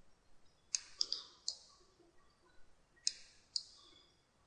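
Computer mouse clicking: five short, sharp clicks, three within the first second and a half and two more a little after the three-second mark.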